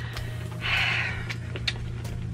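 A short breathy sound, like a single breath, about half a second in, followed by a couple of light handling clicks near the end, over a steady low hum.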